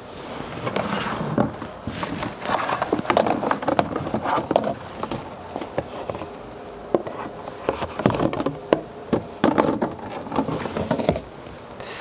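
A plastic wash basin being taken out of a plastic bedside drawer, with irregular scraping and rustling and several sharp plastic knocks.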